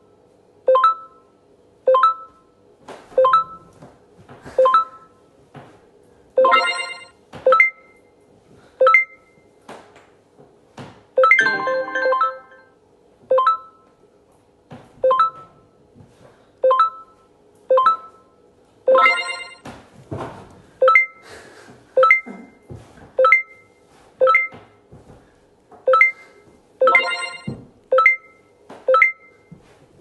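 Short electronic chime tones from the HomeCourt reaction-game app, coming about one or two a second as the on-screen green buttons are hit. A few longer, fuller chimes stand out along the way.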